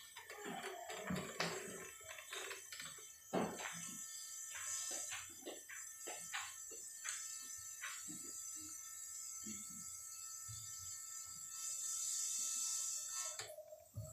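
Low-level room sound of people moving about on a tiled floor: scattered footsteps, shuffles and small knocks. A steady hiss swells shortly before the end, and a steady tone comes in near the end.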